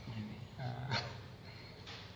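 A man's voice saying a few short words and a drawn-out hesitation ("you know, uh"), with a sharp click about a second in.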